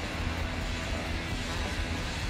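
Steady low rumble of outdoor city background noise, like distant traffic.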